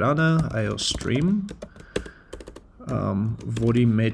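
Computer keyboard typing: quick, uneven key clicks as a line of code is entered.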